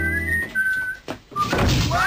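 Comedy soundtrack: a light, whistle-like tune ends about half a second in, then a sharp thunk just after a second in, followed by a noisy clatter and a rising whistle glide near the end.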